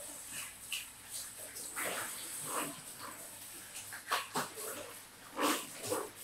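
Hair being rinsed with a handheld shower sprayer over a shampoo basin. Water sprays with a hiss, and fingers work through the wet hair in short, irregular wet squishes.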